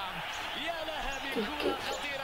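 Faint speech, well below the louder talk around it, with a soft low thump about a second in.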